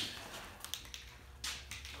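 Faint handling sounds: a few soft taps and rustles as a sanding block is set down on a stack of sandpaper and an aerosol can is picked up.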